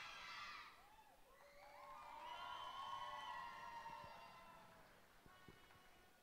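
Faint high-pitched children's voices shouting and cheering, with one long held yell about two seconds in that fades out by four seconds; a couple of soft knocks near the end.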